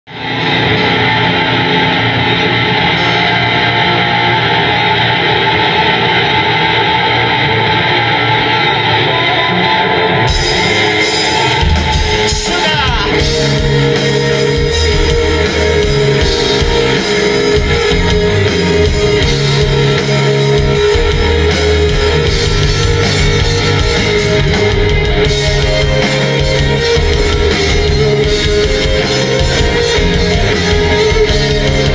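Rock band playing live with electric guitars, bass and drums. For the first ten seconds the sound is muffled, with the treble cut off, then the full band comes in with a steady drum beat.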